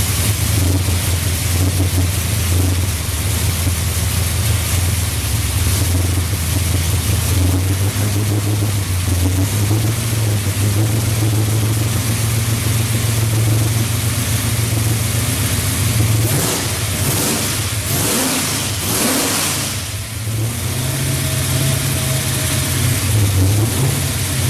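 Supercharged 355ci Holden V8 (Harrop 2300 blower) running just after its first start-up, the revs rising and falling several times as the throttle is worked by hand at the engine.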